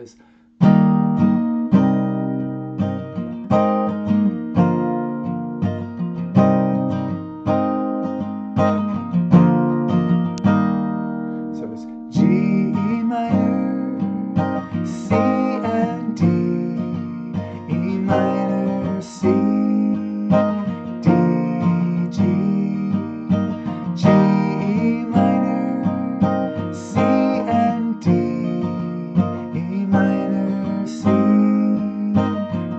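Acoustic guitar strummed in a steady rhythm, capoed at the eighth fret and played with G-form chords so that it sounds in E-flat. The strumming gets brighter and fuller about twelve seconds in.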